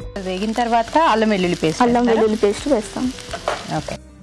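Chopped onions frying in ghee in a pan, sizzling as a wooden spatula stirs them, being cooked to golden. A louder wavering pitched sound runs over the sizzle.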